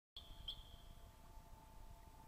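Near silence with a faint, high bird chirp about half a second in over a faint steady hum.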